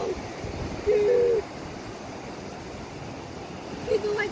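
Surf and wind noise on the microphone, with a short single held vocal note from a person about a second in, the loudest sound here.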